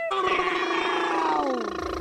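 A man's long drawn-out cat-like yowl, held steady and then sliding down in pitch near the end. A bass beat of music comes in just at the end.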